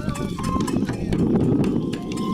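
Japanese kagura accompaniment playing for a dance: a taiko drum and small hand cymbals striking a quick steady beat, about four strokes a second, under short held flute notes.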